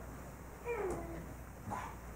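Congregation getting to its feet from church pews, with one short falling squeak about two-thirds of a second in and a fainter brief sound near the end.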